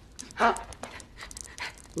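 A frightened woman's panting, whimpering breaths, with a short "uh" about half a second in.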